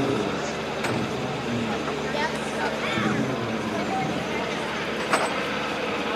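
Black Hawk helicopter passing overhead, its rotor and turbine noise a steady wash, with people talking nearby.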